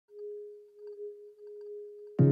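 A single sustained electronic tone at one pitch, close to a pure sine, swelling and dipping in loudness: the soft opening note of a pop song's backing track.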